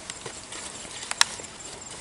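Large banana leaves being handled and picked by hand: a few light clicks and leaf rustles, with one sharp snap a little past a second in.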